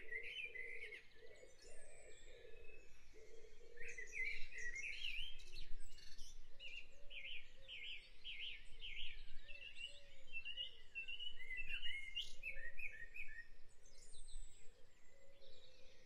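Dawn chorus: several birds singing and chirping at once, overlapping high calls and trills, with a quick run of repeated notes from about six and a half to nine and a half seconds in, over a lower wavering call.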